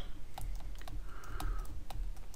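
Stylus tapping on a tablet screen while handwriting: a series of light, irregular clicks, several a second.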